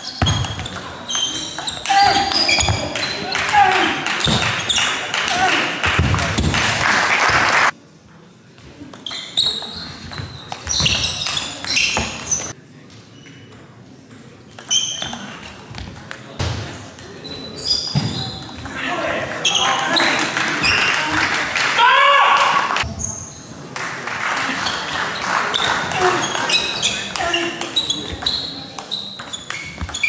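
A table tennis ball clicking back and forth off bats and the table in rallies, in a large sports hall, with voices in the background.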